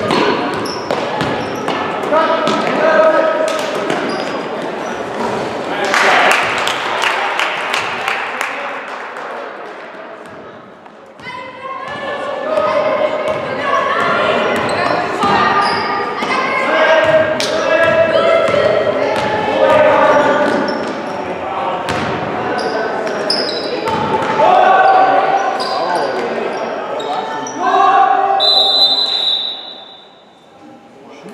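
A basketball bouncing and players moving on a hardwood gym floor, with voices calling out across the echoing gym. Near the end there is a short, high referee's whistle.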